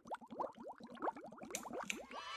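Animated bubbling sound effect: a rapid string of short, rising bloops, like bubbles rising through water, with two sharp ticks near the end.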